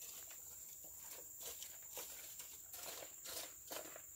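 Faint, irregular light clicks and rustles of outdoor handling work, over a steady thin high-pitched tone.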